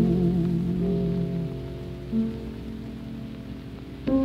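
A plucked dulcimer's strings ring out the closing notes of a folk song, fading away, after a singer's wavering held note ends just after the start. A new note sounds about two seconds in, over the hiss and crackle of an old recording.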